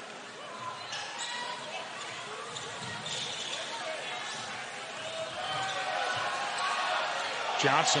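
A basketball being dribbled on a hardwood court during live play, over the steady noise of an arena crowd that grows louder near the end.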